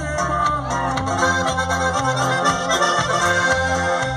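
Live norteño-sax band music: an instrumental passage, with a lead melody over a bass line and drums and no singing.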